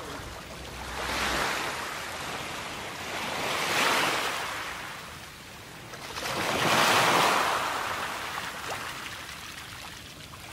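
Sea waves breaking and washing over a rocky, pebbly shore, coming in three surges about three seconds apart, the last the loudest.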